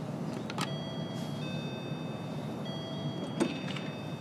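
Doorbell chime of an apartment intercom, a two-tone ding-dong rung twice, over a steady background hiss. A click comes near the end.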